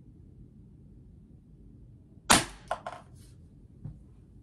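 A single loud shot from a SIG pellet pistol, a sharp crack a little over two seconds in, followed within a second by a few lighter clicks.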